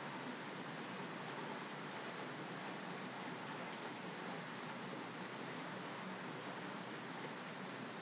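Faint, steady background hiss with no distinct sounds in it.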